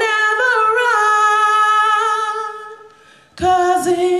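A woman singing solo without accompaniment: one long held note that steps up in pitch about half a second in, holds, then fades away around three seconds; a new note starts just before the end.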